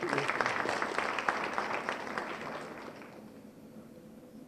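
An audience applauding, which fades away over about three seconds.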